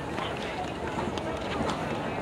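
Indistinct talking of nearby spectators over open-air stadium ambience, with a few light clicks and knocks; the band is not yet playing.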